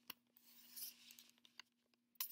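Near silence: faint rubbing and a few small clicks, handling noise from the camera being moved into place, over a steady low electrical hum.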